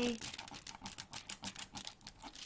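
Clear plastic cover film on a diamond painting canvas crinkling under a fingertip: a quick, uneven run of small crackles.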